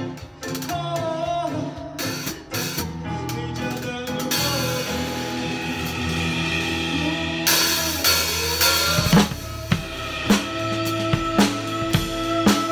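A drum kit is played in a rock-pop groove along with the other instruments of a song: bass drum, snare and cymbals. About four seconds in, a loud cymbal wash rings for roughly three seconds, and near the end the beat settles into steady, evenly spaced hits.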